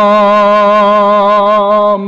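A man's voice holding one long sung note with a slight vibrato in a chanted nazm recitation. The note breaks off at the end.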